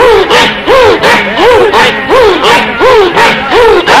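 A crowd of men chanting zikir in short, loud, rhythmic calls, about two a second, each call rising and falling in pitch, over steady musical backing.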